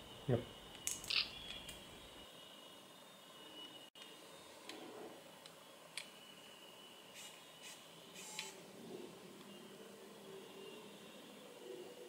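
Faint, scattered short clicks from a Nikon Coolpix L29 compact camera being handled and its buttons pressed while it tries to focus.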